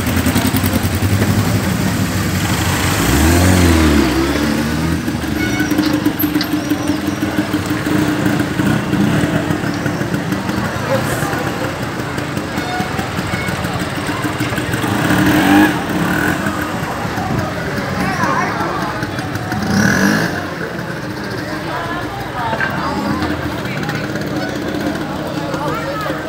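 Motorcycle engines running at low speed alongside a crowd of cyclists, over indistinct chatter of many voices.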